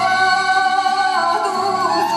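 A woman singing a Moldavian Csángó Hungarian folk song from Klézse, holding long notes into a microphone, with the pitch stepping up about halfway through.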